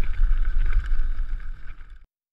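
Riding noise from a mountain bike descending a dirt trail: heavy wind rumble on the GoPro microphone with the bike rattling over the ground. It fades in the last half second and cuts off suddenly.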